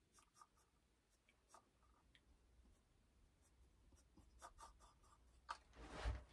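Near silence: quiet room tone with faint scattered ticks, then a few light rustles and knocks in the last second and a half as a person moves.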